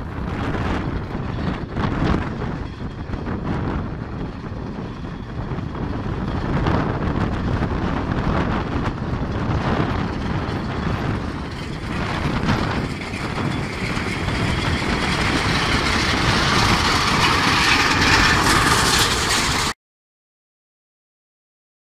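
A team of horses hauling a heavy lifeboat on its wheeled carriage along a wet road, with wind on the microphone, growing louder as the team draws near. The sound cuts off suddenly near the end.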